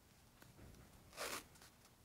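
Athletic tape pulled off the roll with one short zipper-like rasp, about a second in, as it is wrapped around a wrist. Otherwise near silence.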